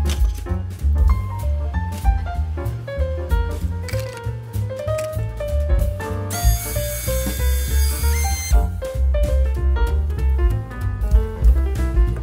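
Swing-style background music with a strong bass line. About six seconds in, the small electric motor and propeller of a caged mini flying-spinner UFO toy make so much noise for about two seconds: a high, steady whine over a hiss, which then cuts off.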